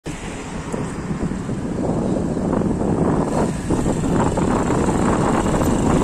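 Wind buffeting the microphone while moving: a steady low rumble with no clear pitch, growing a little louder.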